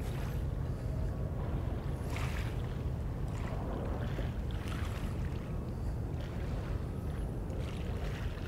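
Waterside ambience: a steady low rumble of wind on the microphone, with small waves lapping softly at the shore a few times.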